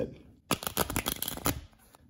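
Riffle shuffle of a deck of playing cards: the two bent halves are let go under the thumbs, giving a fast run of card-edge flicks that starts about half a second in and lasts about a second.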